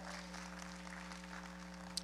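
Faint applause from a congregation, over a steady electrical hum from the sound system.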